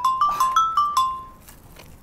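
Mobile phone ringtone playing a quick melody of short electronic notes that repeats and stops about a second in: an incoming call.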